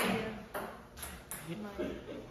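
Faint, low voices in a quiet pause, with a short breathy rush at the start and a few small clicks.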